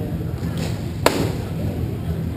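A single sharp crack from roller-hockey play about a second in, over a steady low hum of the rink.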